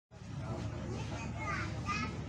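Children's voices and passenger chatter inside a train carriage, over the low steady rumble of the standing train.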